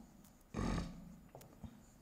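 A short, breathy puff into the microphone about half a second in, then two faint clicks as the stylus writes on the tablet.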